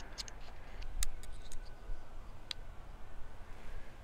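Small sharp clicks and taps of a tiny ND filter being pried off and snapped onto the lens of a DJI Osmo Pocket 3. There are a handful of clicks, scattered over the first three seconds.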